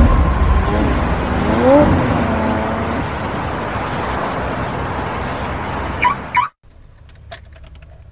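A car engine revving with a rising and falling sweep in pitch, its noise then slowly fading. The sound cuts off abruptly about six and a half seconds in, leaving a quiet stretch with a few faint clicks.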